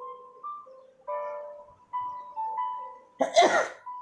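Soft background music of slow, held notes that step from one pitch to the next, with a single short cough about three seconds in.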